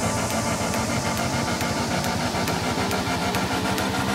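Electronic dance music with a steady beat: a high tick about twice a second over a pulsing bass line.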